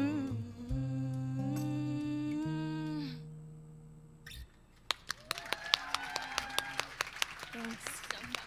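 The closing held note of a country song sung live with acoustic guitar fades out over the first few seconds. About five seconds in, the live audience breaks into scattered applause and cheers.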